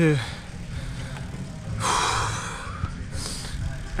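A man breathing hard, out of breath from flat-out sprint laps: one loud gasping breath about halfway through, and a fainter breath near the end.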